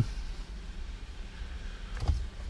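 Low steady hum of background room tone, with no distinct sound events.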